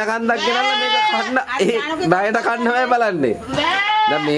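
Goat bleating: two long, drawn-out calls, one early and one near the end, with a man's voice between them.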